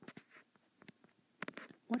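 Stylus strokes on an iPad touchscreen while a word is handwritten: a few short scratchy strokes, one group near the start and another about a second and a half in.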